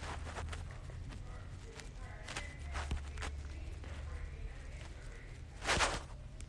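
A toddler sucking and swallowing from a baby bottle, heard close up as soft irregular clicks, with rustling against the bedding and a louder brief rustle near the end.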